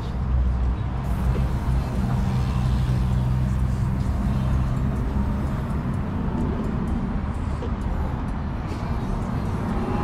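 Steady low rumble of road traffic, with a faint engine hum running through it.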